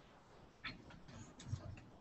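A few faint, short clicks over quiet room tone, about a second apart.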